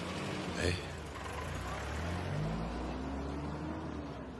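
A car engine running as the car pulls away, its pitch rising as it accelerates.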